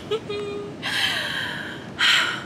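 A woman's short hummed vocal sound, then about a second of breathy exhaling through a smile, a laughing sigh, ending with a sharp breath in.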